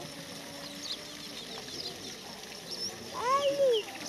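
Small birds chirping throughout. About three seconds in comes one louder cry, lasting under a second, whose pitch rises and then falls.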